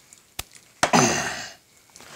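Steel molding flask being handled and lifted off a freshly poured sand mold: a sharp click, then a heavier knock about a second in with a short rush of noise as it comes away.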